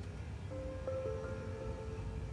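Soft background music of long held notes, with new notes coming in about half a second in and again about a second in, over a low steady rumble.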